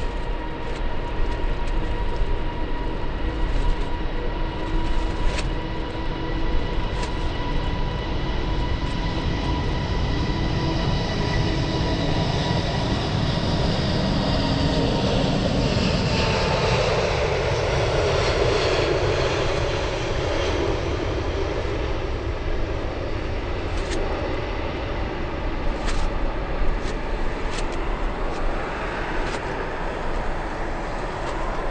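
A British Airways Airbus A380's four Rolls-Royce Trent 900 jet engines at takeoff. A steady high whine gives way, a little past halfway, to a loud rush of jet roar as the aircraft passes, which then slowly eases off.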